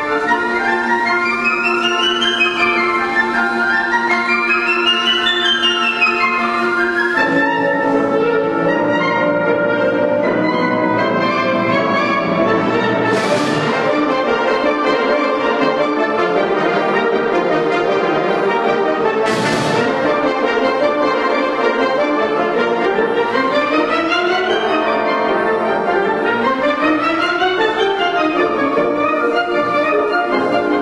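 Symphonic wind band playing a fast piece: quick rising and falling runs over sustained chords, with lower instruments joining about seven seconds in. Two crashes about six seconds apart near the middle.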